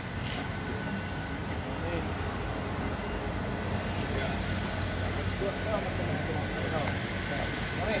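Steady low mechanical hum with faint steady high tones, like a machine or engine running, under quiet talking.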